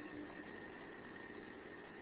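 Faint steady hiss with a thin, steady high whine running under it: the recording's background noise, with no speech.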